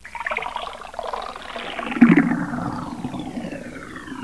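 Cartoon 'skidoo' sound effect for a character jumping into a picture: a noisy, swirling sound with several pitches gliding downward and a stronger hit about two seconds in.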